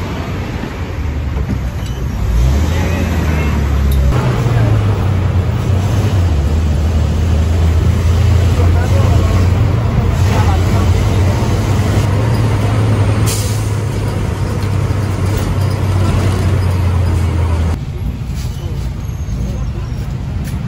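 Engine of an old city bus without air conditioning, heard loudly from inside the cabin as a steady low hum that swells about two seconds in and eases off near the end. A brief hiss sounds around the middle.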